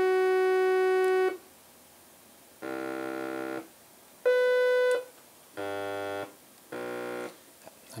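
Eurorack synthesizer tone through the Zlob Modular Foldiplier wave folder, with the fold set to pass the signal almost clean. A steady tone cuts off about a second in, then four short notes follow at different pitches, with silent gaps between them.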